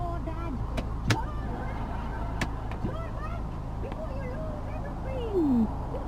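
Volkswagen Beetle's 1.6-litre four-cylinder petrol engine idling, heard inside the cabin as a steady low hum. A few sharp clicks come in the first few seconds.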